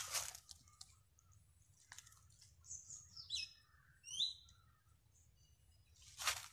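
A bird calling in a few short, high notes, some sliding downward, in the middle of a quiet stretch. A brief rustle of leaves at the very start.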